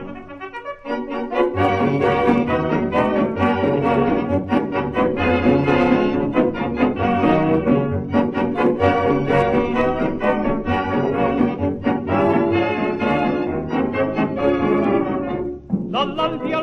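Brass-led band playing an instrumental passage with no singing, trumpets and trombones carrying the tune over a regular bass beat. It starts softly for about a second before the full band comes in.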